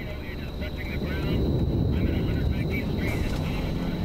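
Wind of a nearby tornado: a low, steady rushing noise that grows louder about a second in, with faint shouting voices over it.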